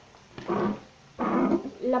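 Two short breathy voice sounds, about a second apart, followed by the start of a spoken word.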